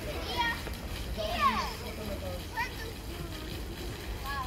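Young girls calling out and crying out as they play, the loudest a high, falling cry about a second and a half in, over a steady low rumble of background noise.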